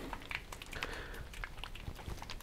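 Faint rustling and light clicks of handling noise, from a clip-on microphone under a shirt being brushed by a hand.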